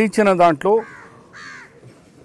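A man's voice briefly, then two harsh caws from a crow in the background, starting about a second in, the second a little longer than the first.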